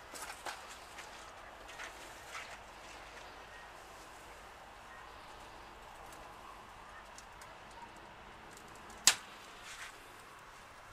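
Faint outdoor background with a few soft rustles and crackles of dry leaf litter near the start, and a single sharp click or snap about nine seconds in.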